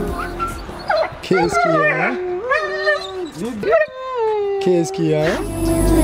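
A dog howling and whining in a series of drawn-out calls that slide up and down in pitch, the last one held steady for over a second. Background music fades out early and comes back near the end.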